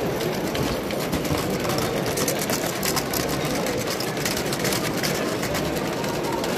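A garden-scale live-steam tank locomotive and its train of small coaches running past close by, with a rapid clicking from the train that is densest midway, over a steady hall background.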